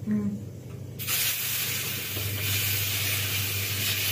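Water running from a tap, a steady rushing hiss that starts suddenly about a second in and keeps going.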